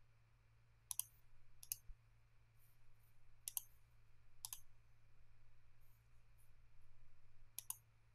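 Faint computer mouse clicks, about six at irregular intervals, as items are picked from on-screen drop-down menus, over a faint steady low hum.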